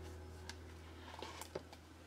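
Quiet room tone: a steady low hum with a few faint, scattered clicks.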